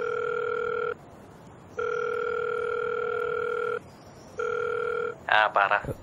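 Electronic telephone ring tone: one steady pitched tone sounding for about two seconds, breaking off briefly and starting again, three times in all, the last one shorter. A voice answers near the end.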